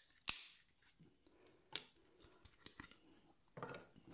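Small laptop trackpad circuit boards clicking as they are handled, pried apart and dropped into a plastic tub of acetone: one sharp click just after the start, another a little under two seconds in, and a few faint taps between.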